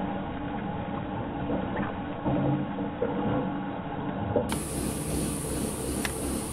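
Ox-drawn zone-till subsoiler and rolling basket dragging through dry soil and crop residue: a steady scraping, rattling noise with a few faint clicks. About four and a half seconds in it gives way to a different outdoor sound, a steady high hiss over a low rumble.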